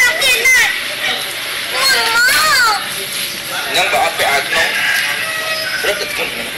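A high-pitched voice talking in a whiny, pleading way, its pitch sliding up and down.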